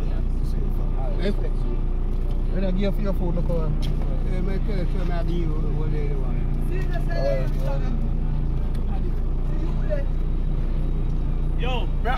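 Steady low hum of a car engine idling, heard from inside the car, with faint voices talking beside it.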